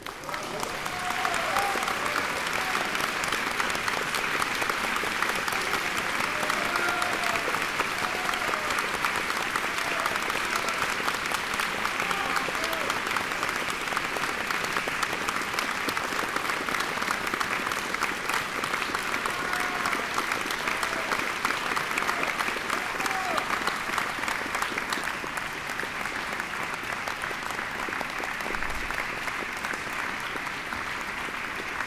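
Concert-hall audience applauding steadily, with a few voices calling out here and there; the clapping eases slightly near the end.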